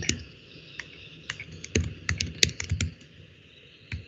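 Typing on a computer keyboard: a quick, irregular run of key clicks, thickest between about one and three seconds in.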